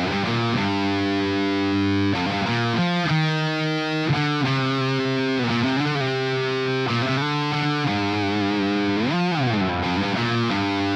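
Electric guitar (Telecaster) played through a Fender Mustang V1 solid-state modelling amp on a high-gain setting: a distorted riff of held chords changing about once a second, starting suddenly. Near the end a note is bent up and back down.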